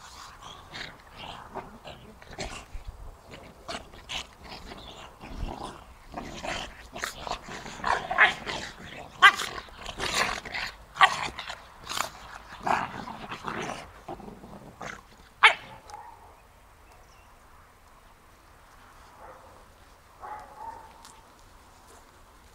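Central Asian Shepherd Dog puppies play-fighting, with a rapid run of short growls and yaps that are loudest in the middle and stop about sixteen seconds in. One faint sound follows near the end.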